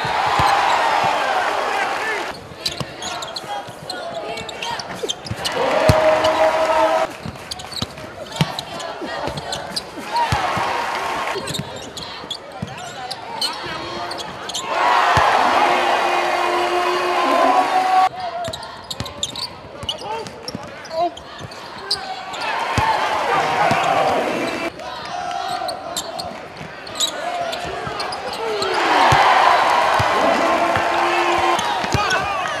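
Arena basketball game sound: a ball bouncing on a hardwood court with many sharp knocks, mixed with voices from the crowd and players. It comes in short sections that change abruptly every few seconds.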